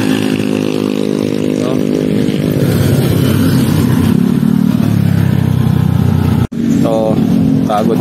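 Motorcycle engines on a road: a steady engine drone, then a scooter passing close by around the middle. It cuts off abruptly for an instant just after six seconds.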